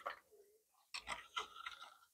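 Faint clicks and light scrapes of small stones being handled under water in a plastic tub, a few at a time in the second half.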